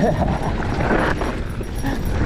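Mountain bike riding down a dirt singletrack: wind on the camera microphone and the rumble and rattle of tyres and bike over loose dirt. Right at the start there is a short yelp-like sound that rises in pitch.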